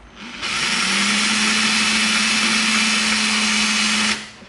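Handheld power drill spinning up about half a second in and then running at a steady speed as its twist bit bores straight through EVA foam.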